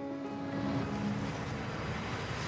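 Soundtrack of a promotional film played over a hall's loudspeakers: a steady rushing noise over soft background music.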